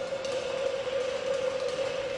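A single sustained synthesizer note, held steady at one pitch after a slight downward slide, opening the skater's program music.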